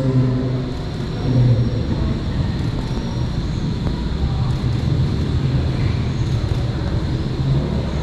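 A steady low rumble runs throughout, with faint, indistinct murmured voices over it near the start.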